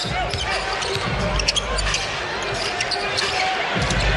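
Arena crowd noise with a basketball being dribbled on a hardwood court during live play.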